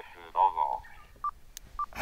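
The other station's voice coming through an Alinco digital community radio's speaker, thin and cut off at the top, finishing its signal report, then two short, equal beeps from the radio about half a second apart with a click between them, as the incoming transmission ends and the set is keyed to transmit.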